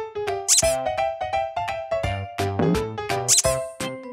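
Upbeat children's background music, with a rubber squeaky duck toy squeaking twice over it, once about half a second in and again just past three seconds.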